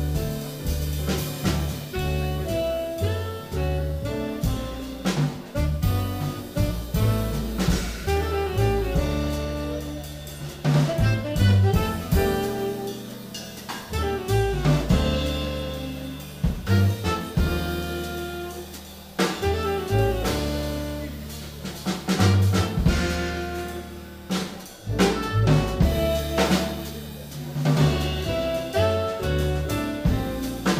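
Live jazz quartet playing: saxophone, piano, upright double bass and drum kit, with the bass walking low notes under the horn and cymbal and drum strokes throughout.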